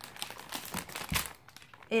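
Diaper sample package crinkling as it is handled, in irregular rustles that are loudest a little after the middle.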